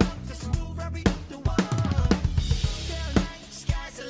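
Roland VAD503 electronic drum kit, sounding through its TD-27 module, playing a steady pop groove of kick, snare and cymbals over the song's backing track. A cymbal wash rings out in the middle.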